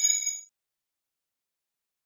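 The tail of a bright, bell-like chime from a logo sting, a single ringing tone with many overtones that ends about half a second in.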